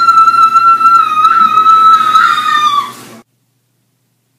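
A steady high-pitched whistling tone, held level for about three seconds with a slight waver, then cutting off.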